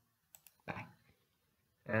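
Computer mouse button clicked, a quick press-and-release pair of sharp clicks about a third of a second in, selecting a menu item, followed by a short louder noise. A brief spoken 'à' comes at the very end.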